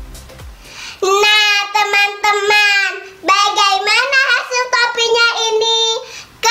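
A young girl singing in a high voice, two phrases of long held notes starting about a second in, after a dance-music track with a bass beat fades out.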